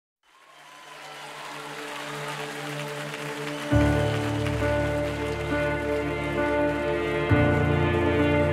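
Audience and choir applause fading in over a faint held keyboard pad. About three and a half seconds in, a full sustained chord with deep bass enters on stage keyboard and band, changing chord shortly before the end.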